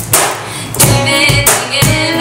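Live acoustic pop performance: two acoustic guitars strummed over a steady cajón beat, with a woman's singing voice coming in about halfway through.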